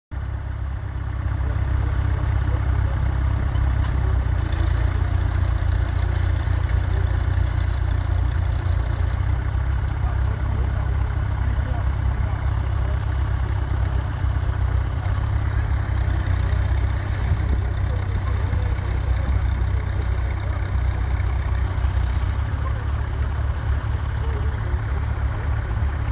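Massey Ferguson 35 tractor engine running steadily under load as it pulls a mounted plough through the soil.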